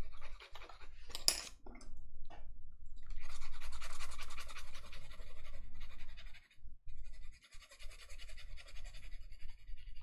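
Graphite pencil scratching on sketchbook paper in quick, repeated strokes: a few short strokes with one brief sharper sound about a second in, then two spells of steady scratching of about three seconds each.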